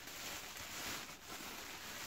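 Bubble wrap rustling and crinkling faintly as hands unwrap a plant pot, with a faint click a little over a second in.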